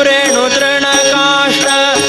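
Devotional bhajan: a male voice singing a gliding, ornamented melody over harmonium and regular tabla strokes.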